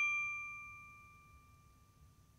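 A bright chime sound effect for a logo reveal, already struck, rings on as several steady pitches that slowly fade away.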